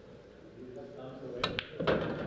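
English pool shot: a cue tip strikes the cue ball about one and a half seconds in, and a split second later there is a second sharp click as ball hits ball.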